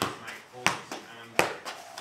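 Soccer ball being juggled: three sharp thuds about 0.7 s apart as the ball is kicked up off the foot and knee, with voices talking between the touches.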